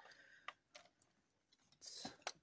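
Near silence with a few faint clicks and handling sounds from a black Deli 0616B plastic rotary pencil sharpener being turned over in the hands.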